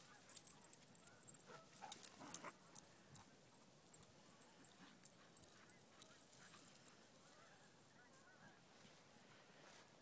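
Near silence, with faint, scattered animal calls and a few soft clicks about two seconds in.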